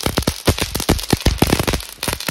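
Ground fountain firework (anar) spraying sparks, with rapid, irregular crackling pops.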